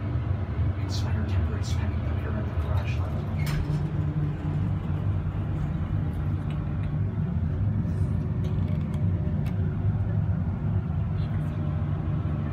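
1970 Oliver & Williams hydraulic elevator with a steady low rumble and scattered clicks as its doors open onto the floor and begin to close again near the end.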